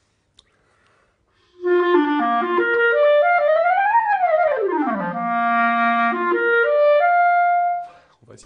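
Clarinet on a Vandoren Masters mouthpiece playing a short phrase that begins about a second and a half in: notes stepping upward, a quick run down to a low held note, then stepping back up to a long held note that stops just before the end.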